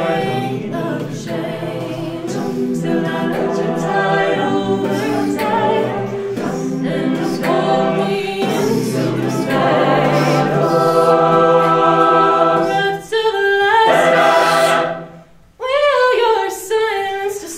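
Mixed-voice a cappella group singing, a female soloist over sustained backing harmonies with vocal percussion ticking along. The voices cut out briefly near the end, then come straight back in.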